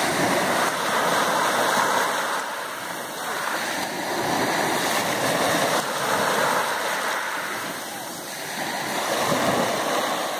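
Small sea waves breaking and washing up over a pebble and shingle beach, swelling and easing every few seconds.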